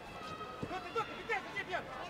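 Voices shouting from ringside in a fight arena, with a few short sharp knocks in between.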